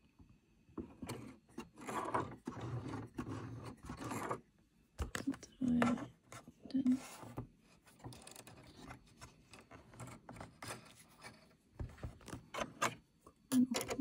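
Necchi 102D sewing machine's handwheel turned slowly by hand, its mechanism giving irregular small clicks and rubbing sounds as the needle is worked down and up to bring up the bobbin thread.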